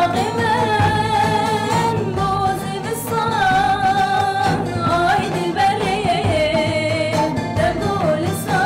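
Two women singing a slow, ornamented melody together, accompanied by a plucked saz (long-necked lute).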